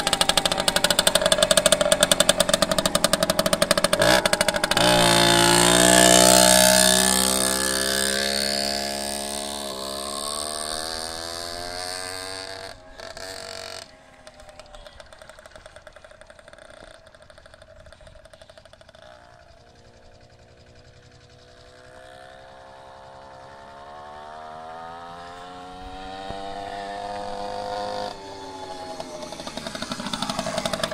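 Macal Junior mini motorbike's small two-stroke Minarelli engine accelerating away, its pitch climbing as it revs up and then fading into the distance. It grows louder again in the last several seconds as the bike rides back toward the microphone.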